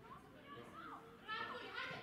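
Children's voices shouting and calling out during play, a few high calls that get louder about halfway through.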